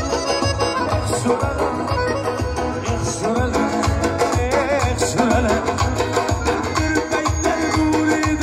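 Live band playing an Uzbek dance song with a steady beat: a male singer over acoustic guitar, electric bass, drums and keyboard.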